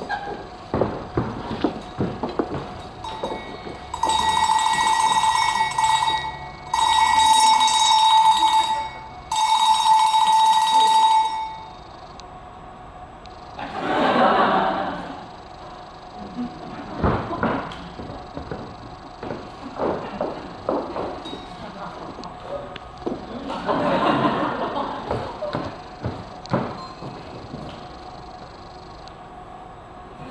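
Bells rung in three long shaken bursts of about two seconds each, starting about four seconds in, each holding the same steady ringing pitch with a jingling shimmer above it.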